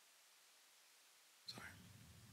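Near silence: room tone, broken about one and a half seconds in by a brief faint sound, after which a low hum comes back in.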